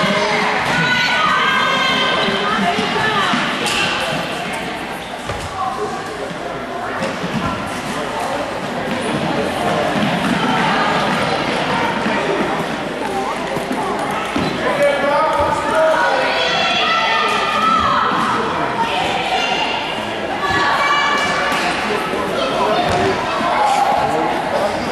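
A soccer ball being kicked and bouncing on a hardwood gym floor, the thuds echoing in the large hall, under the voices of children and onlookers.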